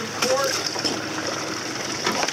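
Steady rush of water and wind beside a small boat's hull, over a low steady hum.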